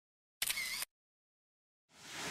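A short intro sound effect for an animated logo, about half a second long, starting and cutting off abruptly.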